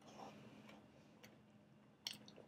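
Near silence with a few faint mouth clicks from someone chewing a large mouthful of burrito.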